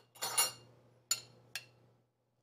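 A utensil scraping and clinking against a small ceramic bowl while cinnamon brown sugar is spooned out: one short scrape, then two sharp clinks.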